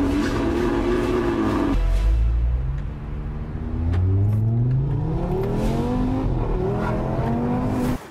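Audi RS3's turbocharged five-cylinder engine, heard first running steadily at the exhaust, then, from about two seconds in, accelerating hard, its pitch climbing several times over as it pulls through the gears.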